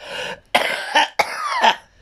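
A woman coughing in a quick run of several short, harsh coughs.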